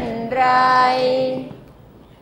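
Students chanting a line of Thai verse together in the melodic thamnong sanoe recitation style, the final syllable drawn out on a long held note that fades away about one and a half seconds in.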